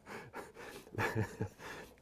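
A man's breathing between sentences, with a short, soft murmur of voice about halfway through.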